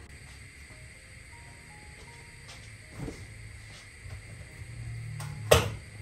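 Low steady rumble of a gas burner heating a stainless-steel Bialetti moka pot, with a soft knock about three seconds in and a loud, sharp knock near the end.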